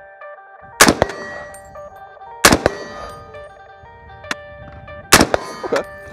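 Three rifle shots from a Springfield Saint Victor AR-10 in .308, about a second in, at two and a half seconds and just after five seconds, each sharp and loud with a short ringing tail, over background music.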